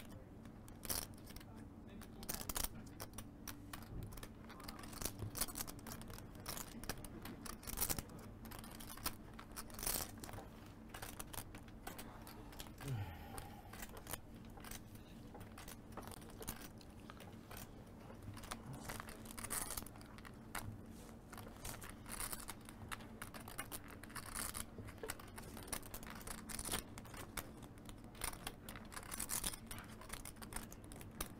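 Poker chips clicking irregularly as they are handled and shuffled at the table, over a faint steady room hum.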